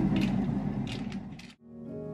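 A few light clicks and handling noises over room noise, about four in the first second and a half. Then a sudden cut, and soft background music begins near the end.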